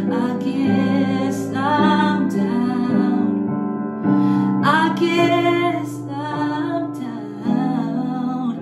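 A woman singing a slow ballad over a karaoke piano backing track, holding long notes that bend in pitch.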